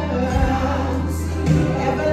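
Live gospel music: singing voices over a band with a held bass line that changes note twice.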